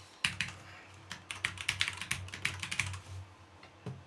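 Typing on a computer keyboard: a quick run of keystrokes lasting about three seconds, entering a file name, then a single click near the end.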